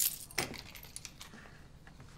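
A bunch of metal keys jingling as they are snatched up from a desk, in a sharp burst at the start and another about half a second in.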